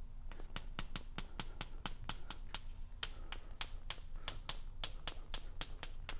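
Chalk writing on a blackboard: a quick, irregular run of sharp clicks and taps, several a second, as the chalk strikes and scrapes the slate while formulas are written.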